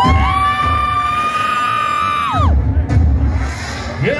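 Live hardstyle DJ set played loud over a festival sound system: a held synth lead note that bends sharply down about two and a half seconds in, followed by heavy bass kicks.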